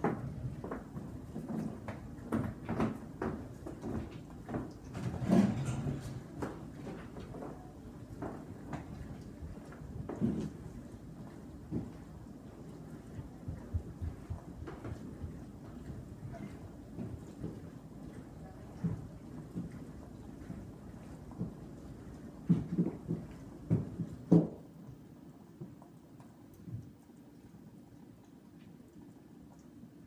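Scattered knocks and bumps from household movement over a low rumble, loudest in a cluster just before the rumble drops away about three-quarters of the way through, leaving quieter room tone.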